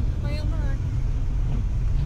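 Steady low rumble of a car heard from inside the cabin as it drives down a snowy slope, with the car sliding on the snow. A voice says a word near the start.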